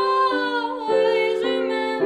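A girl singing a Christmas song with her own piano accompaniment on a digital piano. Her held notes bend and slide over piano chords struck a few times underneath.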